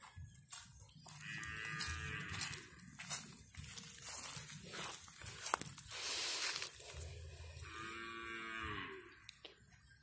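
A cow mooing twice: two long calls about six seconds apart, each falling in pitch at the end. A short rustling burst falls between them.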